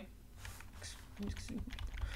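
Computer keyboard keys being tapped: a string of light, irregular clicks.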